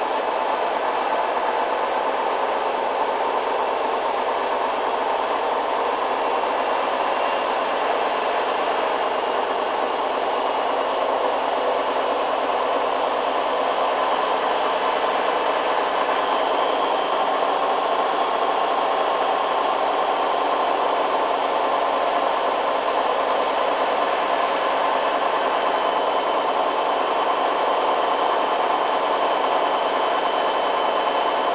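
Hoover DYN 8144 D front-loading washing machine spinning at high speed. A high motor whine climbs slowly in pitch over a steady rushing sound from the drum.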